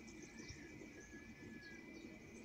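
Near silence: faint outdoor background with a thin steady high tone.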